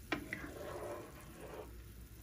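A ladle gives a sharp tap against the pot at the start, then a pot of patola and squid-ball soup bubbles softly at a simmer.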